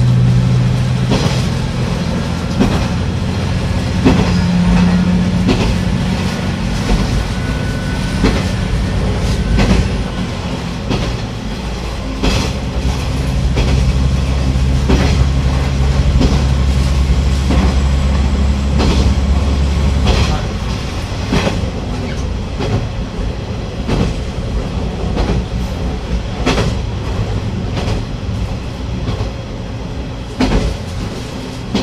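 KiHa 120 diesel railcar running along the line, heard from the cab: the diesel engine drones steadily, dropping to a deeper note for several seconds in the middle, while the wheels click over rail joints again and again.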